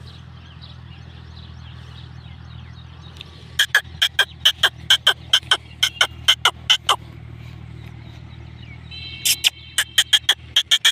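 An animal giving a rapid run of short, sharp, high calls, about four a second. The calls begin a little past the middle, last about three seconds, and start again near the end. Under them is a low, steady hum.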